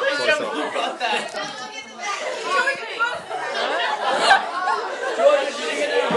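Several teenagers talking over one another at once, with some laughter mixed in.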